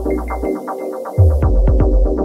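Electronic dance music from a house and techno DJ mix, with a rapid run of repeating synth notes. The bass drops out about half a second in and comes back heavily just after one second, while the high hi-hats fall away.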